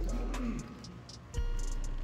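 Background music with a deep bass note at the start and another about 1.4 seconds in, with a faint low cooing or humming sound over it.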